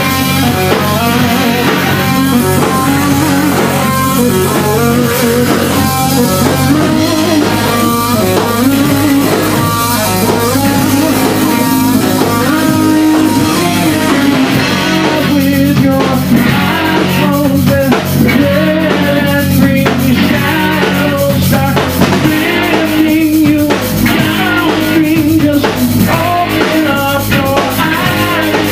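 Live rock band playing loud: distorted electric guitars over bass guitar and a drum kit, running through a new song.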